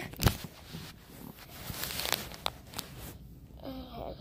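Handling noise from a phone camera being moved: a sharp bump just after the start, then rustling and scattered clicks for a couple of seconds, dying down near the end.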